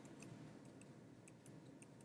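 Near silence broken by several faint, short clicks of laptop keys, tapped one at a time to step forward through image slices.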